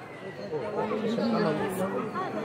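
Indistinct chatter of several people talking at once in the background, with no clear words.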